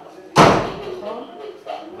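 A single loud bang about half a second in, fading away over about half a second.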